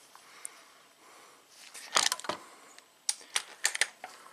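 Light clicks and knocks of hands and tools being handled in an engine bay: a short cluster about two seconds in, then several separate sharp clicks near the end.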